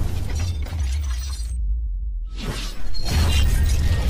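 Cinematic logo-intro sound effects: noisy crashes over a deep bass rumble. About one and a half seconds in the high end drops away for under a second, then a hit near three seconds brings it back louder.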